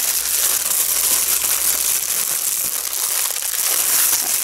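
Thin clear plastic packaging bag crinkling and crackling continuously as it is squeezed and pulled at by hand in an effort to tear it open.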